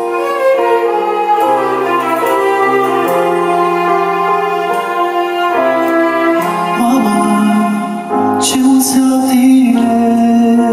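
A song for a mother: an instrumental introduction of held notes on violin and piano, with a voice starting to sing about seven seconds in.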